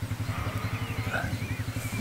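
A small engine idling steadily, a low even drone with a fast regular pulse.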